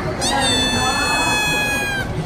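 A high-pitched, voice-like squeal: one long note that rises sharply, then holds and slowly falls for about a second and a half.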